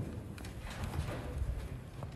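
A few faint, irregular low knocks and light clicks over quiet room noise.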